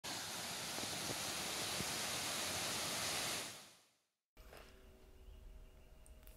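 Small waterfall, a thin stream falling from a rock overhang onto rocks below, with a steady rushing splash that fades out about three and a half seconds in. After a brief silence, faint room tone with a light steady hum follows.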